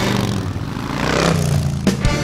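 A vehicle engine sound that swells up over a steady low hum, then cuts off sharply just before the end.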